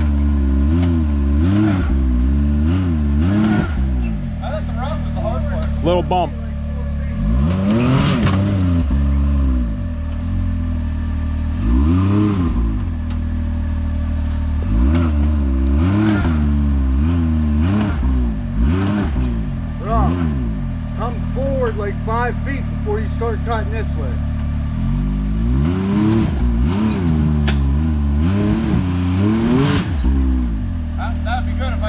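Can-Am Maverick X3 side-by-side's three-cylinder engine revving up and dropping back in about six separate bursts as it tries to crawl up a rocky ledge, hung up on a rock it cannot get over.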